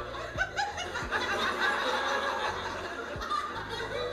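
Laughter: a man chuckling and snickering, along with a stand-up comedy audience laughing.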